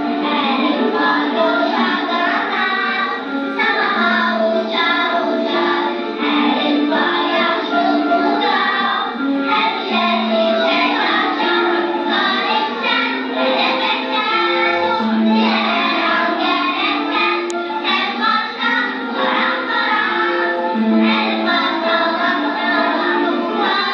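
A group of children singing a song together with instrumental accompaniment.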